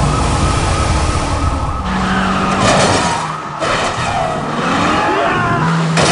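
Film car-chase sound effects: car engines running hard and tyres skidding, with a siren wailing.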